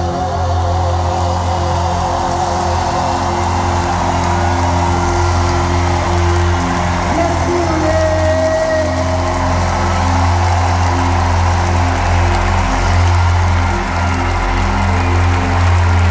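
Live band music from the stage: held chords over a steady, strong bass note.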